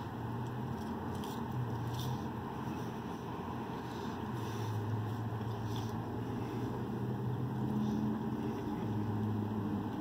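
Steady low engine hum and rumble heard from inside a pickup truck cab, its low tones swelling and fading a little.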